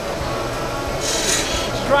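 Wood lathe running steadily, with a turning tool cutting into the spinning wooden spindle from about a second in, a hissing scrape of the cut.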